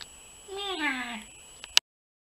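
A single drawn-out vocal call, sliding down in pitch, about half a second in. A sharp click follows near the end, then the sound cuts off.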